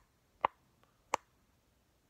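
Two sharp clicks, about two-thirds of a second apart, from handling a clip-on phone ring light as it is put on.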